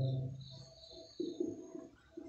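A bird cooing faintly in the background: two short, low notes a little over a second in.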